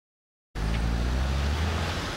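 Floodwater churning up out of a submerged storm drain, the drain backing up because the drainage cannot carry off the rain, over a steady low hum. The sound starts about half a second in.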